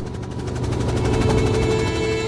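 Helicopter main rotor beating in a rapid, even chop, with a low engine rumble beneath it.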